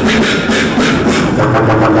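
Live vocal beatboxing through a club PA. Punchy drum-like hits come at about four a second, then about a second and a half in they give way to a sustained low buzzing bass tone.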